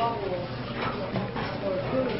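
Indistinct talking: voices speaking at a low level, with no clear words.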